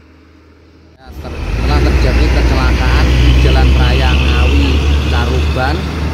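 Road traffic rumbling past close by, a loud low rumble of heavy vehicles that swells in about a second in and then holds steady, with people's voices over it.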